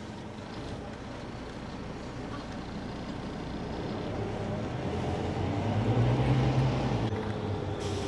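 Vehicle engine and road noise, a steady low hum that swells to its loudest about six seconds in and then eases off.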